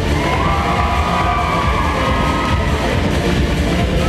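Dance routine music with a heavy, steady beat and a sustained melody over it.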